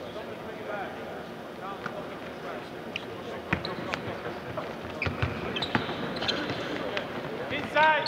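A basketball bouncing on a hardwood court in a large empty arena: a few irregular thuds from about three seconds in, more frequent towards the end, with players' and coaches' voices in the background.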